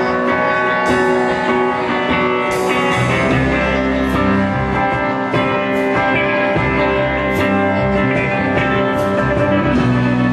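Live rock band playing: electric guitar holding sustained chords, with a fuller low end and cymbal hits coming in about three seconds in.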